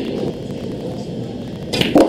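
Low steady hall ambience, then near the end a single sharp click of a pool cue tip striking the cue ball.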